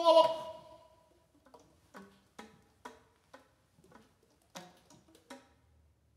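Sparse live improvised music on wind instruments. A loud held note dies away within the first second. It is followed by about seven short, scattered clicks and pops with a little pitch to them, separated by near quiet.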